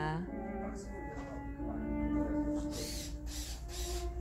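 Music with long, held notes playing through a pair of KEF Reference Model Two floorstanding loudspeakers.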